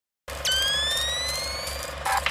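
Electronic intro sound effect: buzzing static with a low hum starts suddenly just after the start, and a high whine jumps up, then glides slowly upward for about a second and a half.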